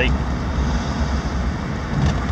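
Cabin noise in a moving 2003 Ford Explorer Sport Trac: a steady low rumble from the 4.0-litre V6 and the tyres, with an even hiss of road noise over it.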